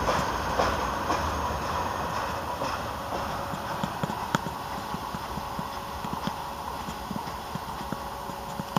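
Freight cars rolling slowly past, their wheels clicking irregularly over rail joints above a low rumble that slowly fades.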